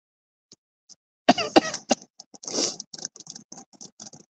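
A person coughing: a quick run of short coughs a little over a second in, then a longer, rougher one, followed by faint scattered clicks.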